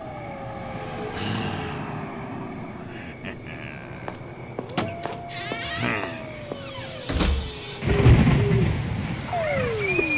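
Spooky cartoon sound effects: eerie tones that slide slowly downward, three in a row, with a few knocks and low thuds about seven to eight seconds in.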